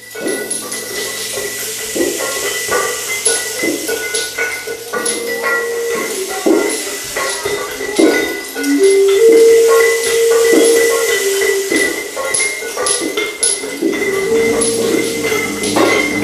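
Children's percussion orchestra playing improvised music: scattered clicks, knocks and rattles from hand percussion over a thin steady high tone, with held notes that step between a few pitches, loudest about two-thirds of the way through.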